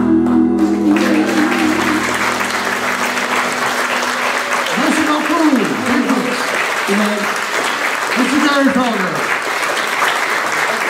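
Two acoustic guitars' final chord ringing out as the song ends. An audience starts applauding about a second in, with a voice heard over the applause.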